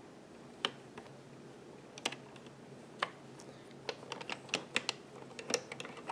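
Small sharp clicks of a metal crochet hook and plastic latch needles on an Addi Express knitting machine as a dropped stitch is latched up. A few spaced clicks come first, then a quicker irregular run from about four seconds in.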